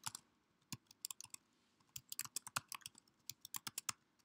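Keystrokes on a computer keyboard as a short line is typed: a few keys about a second in, a brief pause, then a quick run of irregular keystrokes.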